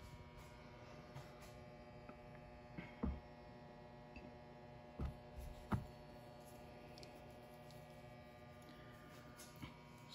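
Quiet room tone with a steady electrical hum. A few soft knocks come about three, five and six seconds in.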